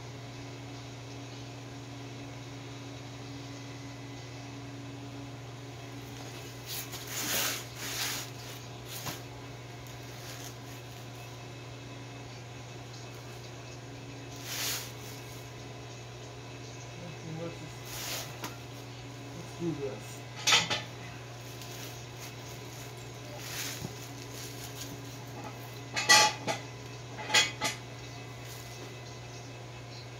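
Metal hand tools clinking and tapping against the steel running gear under a 1941 Dodge truck: short sharp clinks in irregular clusters, the loudest near the end, over a steady low hum.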